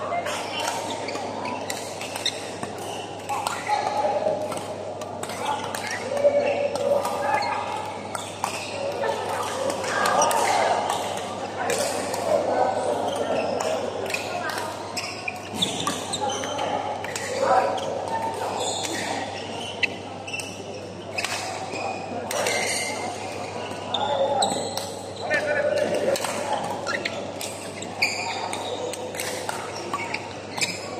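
Badminton rackets striking a shuttlecock in a doubles rally, sharp hits coming at irregular intervals, echoing in a large hall over the chatter of players and onlookers from the surrounding courts.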